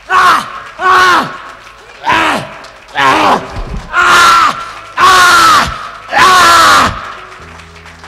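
A man's loud, wordless cries, seven in a row about a second apart, each one sliding down in pitch, the later ones drawn out longer.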